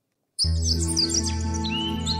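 Segment intro music with birdsong laid over it: silence, then about half a second in a soft music bed of held notes starts, with birds chirping and twittering on top.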